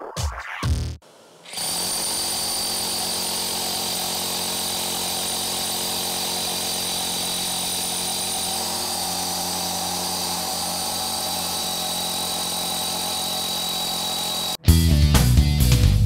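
Cordless SDS-Max rotary hammer drilling a one-inch hole under load. It starts about a second and a half in and runs steady and unbroken until it cuts off about 14.5 s in. Loud electronic music follows.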